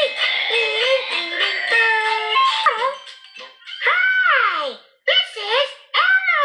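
Bright children's-show music with a high, squeaky puppet-like voice, then, in the second half, a few long vocal swoops that slide steeply down in pitch.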